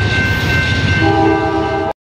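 A train horn sounding over the rumble of a train, its chord weaker in the first second and stronger again after that, then cutting off abruptly near the end.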